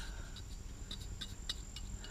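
Faint, scattered light ticks and scrapes of a small brush dabbing anti-seize compound onto the steel wheel's hub-mounting face, about five small clicks in two seconds.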